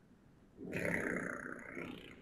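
A woman's soft, breathy, drawn-out exhale that starts about half a second in and fades away over about a second and a half.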